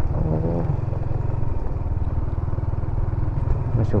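Yamaha motor scooter engine running steadily at low cruising speed, a constant low hum.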